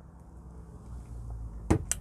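A man sipping beer from a glass, with two sharp clicks in quick succession near the end.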